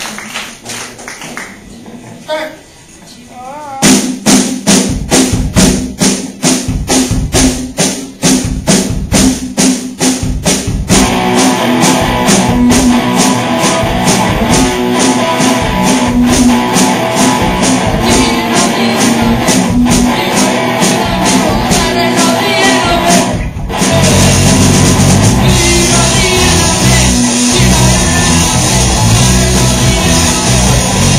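A live rock band of drum kit and electric guitar starting up. After a few quieter seconds the drums come in with a steady beat over a held guitar note. The band fills out, stops for a moment about three-quarters of the way through, then comes back in louder with heavy bass drum.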